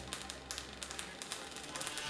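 Arc welding on a car body shell: an irregular crackle of fast clicks over a faint low hum.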